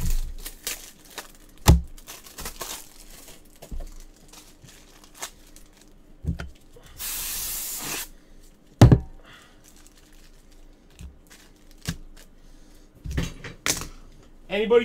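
Trading cards and their packaging being handled on a table: scattered clicks and a few louder thumps as things are set down, and a one-second tearing rustle about seven seconds in.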